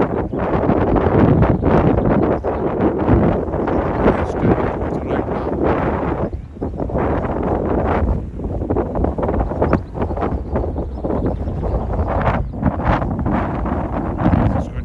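Strong gusting wind buffeting a phone microphone: loud, uneven rumbling that surges and dips from gust to gust.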